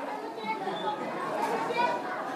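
Quiet background chatter: several voices of the listening congregation talking faintly while the main speaker is silent.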